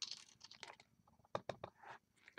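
Faint handling noises of craft materials: a short rustle, then a few sharp, separate clicks and taps as a clear acrylic stamp block and cardstock are picked up and set down on the craft mat.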